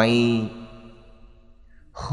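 A man's speaking voice holding the last syllable of a phrase at a steady pitch for about half a second, then a pause with only a faint fading tail until speech picks up again at the very end.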